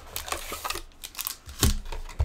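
Cardboard trading-card box being torn open by hand and its wrapped pack pulled out: crinkling and rustling of card stock and wrapper, with one sharper click about one and a half seconds in.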